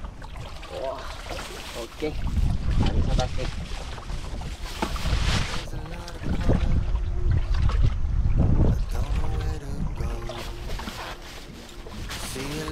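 Wind rumbling on the microphone over sea water lapping around a boat's swimming ladder, with people talking at times, mostly in the second half.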